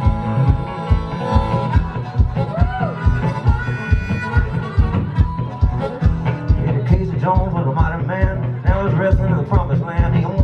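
Acoustic guitar and harmonica playing a fast country-blues boogie instrumental, with bent harmonica notes over a steady low beat of about two to three thumps a second.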